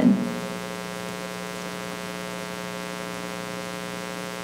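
Steady electrical mains hum with a buzz of evenly spaced overtones, holding at one level throughout.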